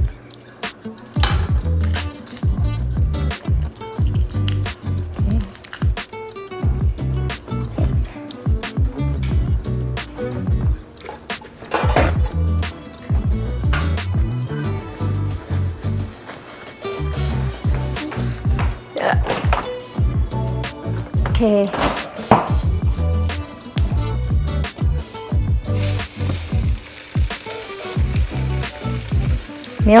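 Background music with a steady beat; from about four seconds before the end, butter sizzling in a hot frying pan comes in underneath.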